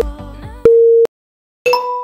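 Electronic interval-timer beeps: background music fades as a steady mid-pitched beep sounds for under half a second, then after a short silence a second tone begins and dies away.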